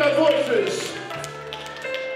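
Church organ holding sustained chords, with a new low note entering a little past a second in. A voice over it trails off on a falling pitch about half a second in.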